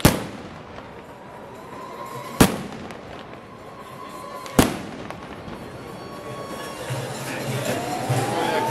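Three loud bangs, evenly spaced about two seconds apart, each with a short echo, over a crowd's background noise. Near the end, music comes in with a rising tone.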